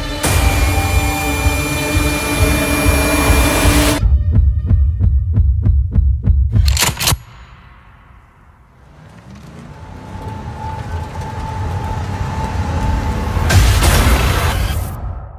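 Trailer score and sound design: a loud sustained drone, then a run of quick heavy pulses like a heartbeat, a sharp hit about seven seconds in that cuts off suddenly to quiet, then a low drone that swells back up to another loud hit near the end.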